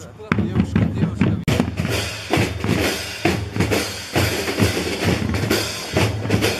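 A marching drum corps playing: bass drums and snare drums beating a steady rhythm, the playing growing denser about a second and a half in.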